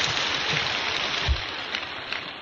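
A steady crackling, rain-like noise fills the pause, tapering off in the second second, with one short low thump partway through.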